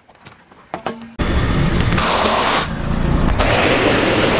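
Car tyre rolling onto and crushing objects on asphalt: loud, dense crunching that starts suddenly about a second in. It goes on after an abrupt cut partway through, as the tyre presses into a pile of cheese puffs.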